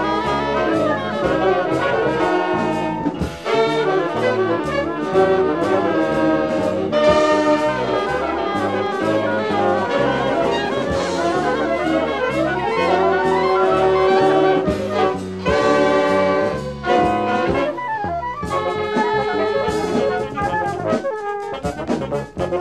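Contemporary jazz by a large ensemble: a horn section of trumpets and saxophones playing shifting chords in harmony. The sound is dense and continuous, with brief drop-outs a few times.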